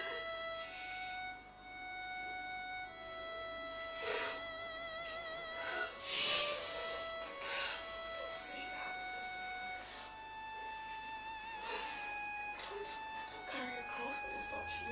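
Background film music: a slow melody of long held notes with vibrato, in a violin-like voice.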